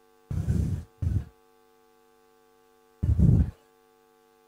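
Steady electrical mains hum with a stack of tones, broken three times by short rustling thumps of microphone handling noise: near the start, about a second in, and about three seconds in.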